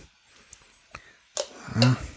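A quiet room with two faint small clicks, then a man's voice briefly near the end.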